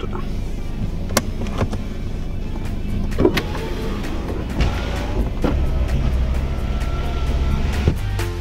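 Steady engine and road rumble heard from inside the cabin of a moving car, with a few light clicks, under background music.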